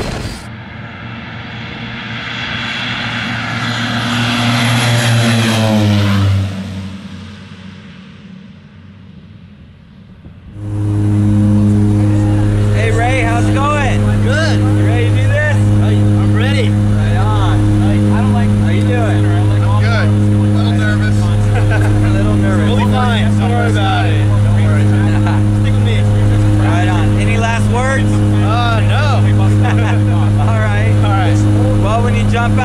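Skydiving jump plane's engines, first swelling during the takeoff run and then dropping away about six seconds in. From about ten seconds in comes the loud steady drone of the engines heard inside the cabin on the climb, pulsing about once a second.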